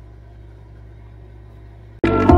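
A steady low hum with no other events: room tone.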